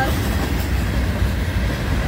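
Florida East Coast Railway freight train's cars rolling past a grade crossing at speed: a loud, steady rumble of steel wheels on the rails.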